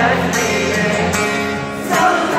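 Live rock band playing through the arena PA, with strummed guitars to the fore and a little singing, heard loud from among the crowd. The music dips briefly just before the end.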